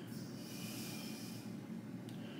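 A man breathing out through his nose, faint, with a longer breath in the first second or so.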